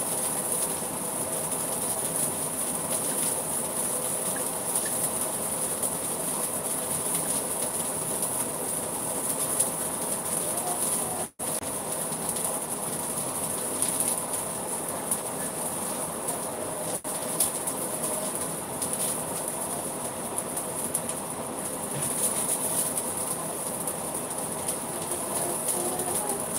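Food frying in oil in a pan: a steady sizzle with faint crackles, cutting out briefly twice.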